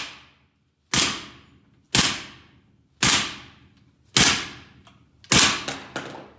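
A rifle with a Magpul Zhukov folding stock struck against a concrete floor again and again, five sharp clattering impacts about a second apart, each ringing out briefly in a small concrete room.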